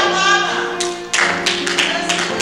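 A man's voice sustaining a sung hymn note with vibrato, over held chords from an accompanying instrument. A quick run of sharp percussive hits falls about a second in.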